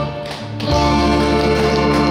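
A live band led by electronic keyboard plays the closing instrumental bars of a Korean trot song without vocals. After a short lull, a sustained final chord comes in just under a second in and is held.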